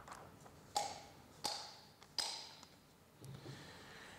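Three sharp metal knocks, each ringing briefly. They come from driving a bearing home into the steel barrel of a Heiniger shearing handpiece with the bearing tool.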